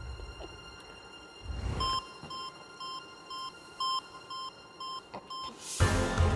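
Game-show sound effects: a low heartbeat-like thump, then a run of short electronic beeps, about two a second. Near the end a rising whoosh swells into the show's music.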